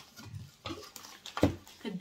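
Handling of a stainless steel food-processor bowl: soft scuffing and small knocks, then one sharp metallic knock about a second and a half in.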